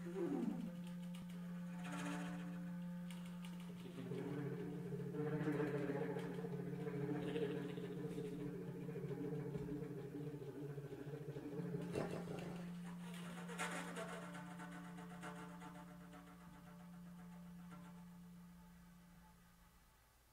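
Improvised clarinet and flute music: a steady low drone is held throughout, joined about four seconds in by a thicker layered tone, with a few short rushes of airy noise. It all fades out near the end as the piece closes.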